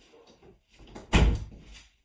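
Bedroom door being pushed shut, closing with one loud knock about a second in.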